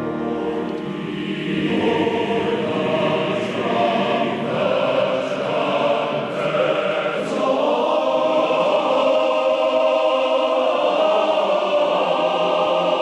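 Large men's choir singing loudly in full harmony, holding chords and moving between them.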